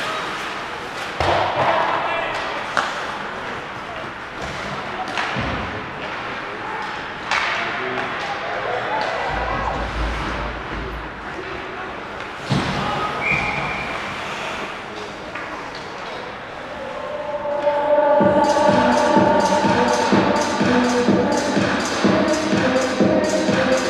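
Ice hockey arena sound from the stands: scattered knocks of puck and sticks against the boards over a murmur of voices in a large echoing rink, with a short whistle about halfway through. From about eighteen seconds in, music with a steady beat starts over the arena speakers and becomes the loudest sound.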